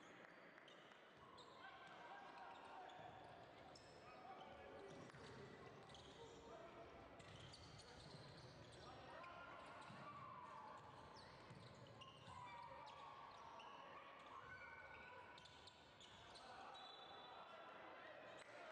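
Faint game sound of a basketball game in an indoor hall: a basketball bouncing on the hardwood court, with indistinct voices of players and spectators echoing in the hall.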